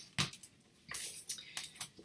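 Handling of an LP's stiff card sleeve and paper insert: a sharp tap just after the start, then a few short rustles and taps near the end.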